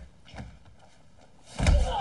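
A sudden heavy thump about a second and a half in, followed by a short voiced sound.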